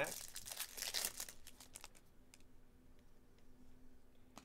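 Foil wrapper of a Bowman Chrome baseball card pack being torn open and crinkled for about the first two seconds, then a few faint clicks as the cards inside are handled.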